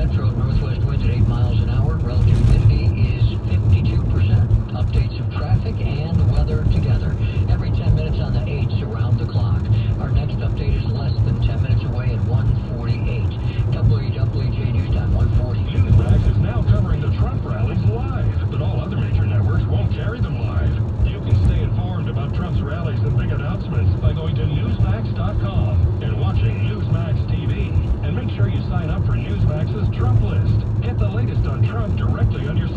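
Steady road and engine noise inside the cabin of a moving car, with a voice from the car radio underneath.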